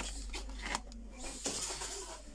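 Plastic blister packs of tools being handled on a hanging rack: a few irregular clicks and rustles.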